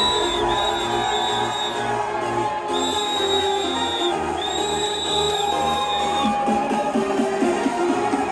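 Electronic dance music from a DJ set played loud over a club sound system: held high synth notes over a pulsing bass. About six seconds in the bass drops out, leaving a short repeating riff.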